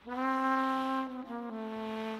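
A trumpet in a jazz track plays a long held note, which steps down slightly about a second in and is held again.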